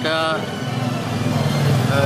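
A motor vehicle's engine running steadily, growing louder from about a second in, after a brief spoken word at the start.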